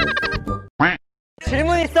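Laughter and chatter over background music, then a short pitched vocal sound and a brief dead-silent gap at an edit cut. Speech over music starts again in the second half.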